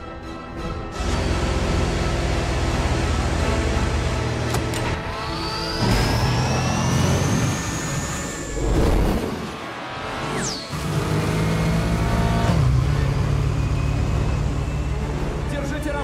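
Action-film sound mix: vehicle engines running steadily under orchestral score, with a long rising whine about five seconds in and a quick falling whoosh around ten seconds in.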